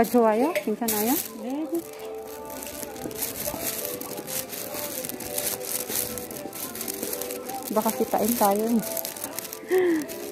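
Store background music playing steadily, with a voice speaking over it in the first couple of seconds and again briefly near the end, and light rustling close to the microphone.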